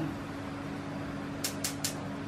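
Three quick sharp clicks, about a fifth of a second apart, over a steady low hum.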